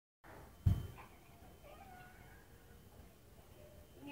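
A single dull thump about half a second in, followed by a faint, brief pitched sound that slides in pitch.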